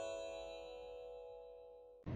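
Fading tail of a bell-like chime chord from a title-card intro sting, dying away slowly and cut off abruptly at the end.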